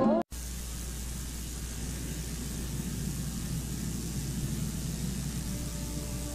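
Music cuts off right at the start, then a steady hiss with a low hum underneath.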